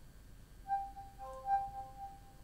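Cortana voice assistant on a Nokia Lumia 830 playing a soft electronic chime of a few held tones at different pitches, starting about half a second in. It signals that the spoken question has been taken in and is being processed.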